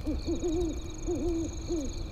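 Owl hooting: a string of short, low hoots that rise and fall in pitch, over a steady high chirring of insects.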